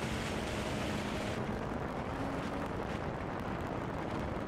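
Steady wind noise rushing over the microphone of a camera mounted on a moving snowmobile, with a faint engine note underneath.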